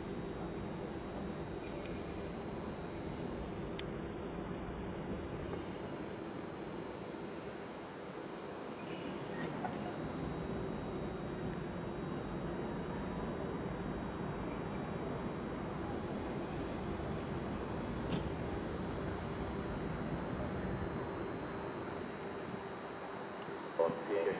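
Stadler FLIRT electric multiple unit creeping slowly into a station: a steady low hum and rolling noise with a faint steady tone and a couple of faint clicks.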